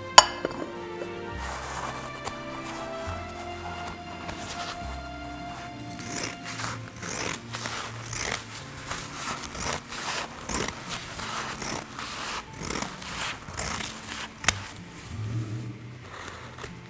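Background music with held notes. Just after the start a sharp clink as a plate is set over a glass bowl, then from about six seconds in a run of irregular snips as scissors cut through a paper towel, with one more sharp click near the end.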